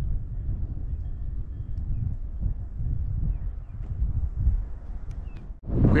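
Wind buffeting the action camera's microphone: a low, gusting rumble. It cuts off suddenly near the end.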